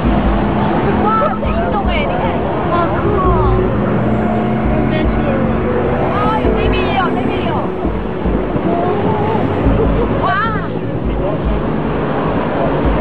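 A small boat's motor running steadily under uneven low rumbling gusts, while people aboard let out excited, high, swooping exclamations several times, loudest about a second in, around six to seven seconds in, and near ten seconds in.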